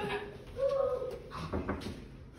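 A person's voice making a short hooting "ooh" about half a second in, followed by a few soft slaps.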